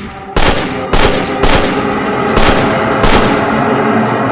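Five gunshots, unevenly spaced over about three seconds, each a sharp crack followed by a ringing, echoing tail.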